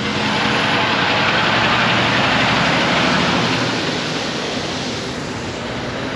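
Tractor-trailer passing on the road, a rush of tyre and engine noise that swells over the first couple of seconds and then fades away.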